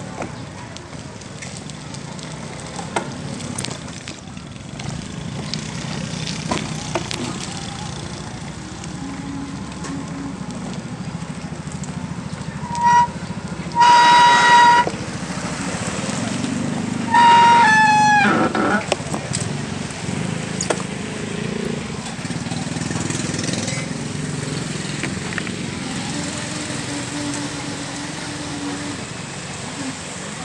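A horn honks three times about halfway through: a short toot, a longer one, then one that sags in pitch as it ends. Under it runs a steady low rumble of road noise from riding along the street.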